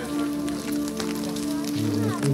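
Voices singing Orthodox liturgical chant, holding long steady notes, with a new phrase of wavering pitch starting near the end. Light crackling ticks sound throughout.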